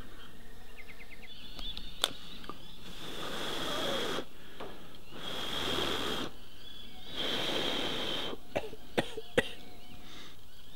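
A person blowing on a smouldering cloth rag to fan the embers into flame as bee-smoker fuel: three long breaths, each about a second, from midway on. A few sharp clicks are heard before and after them.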